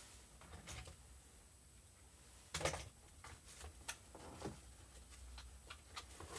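Quiet room tone with a few faint knocks and clicks of objects being handled, the loudest about two and a half seconds in.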